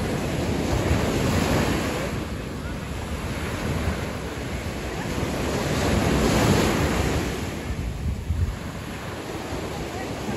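Small surf breaking and washing up a sandy beach, swelling louder about a second in and again around six to seven seconds in, with wind buffeting the microphone.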